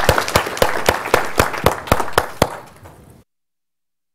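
Applause from an audience and panel, many hands clapping irregularly, dying away and cut off abruptly about three seconds in.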